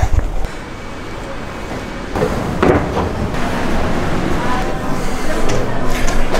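Wind buffeting the microphone cuts off about half a second in. After that comes the background noise of a building interior, with brief voices.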